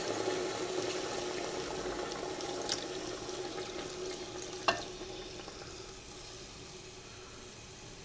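Water poured from a mug into an aluminium pressure cooker full of pork ribs and onions, a steady splashing pour that slowly grows quieter. A short sharp click comes about halfway through.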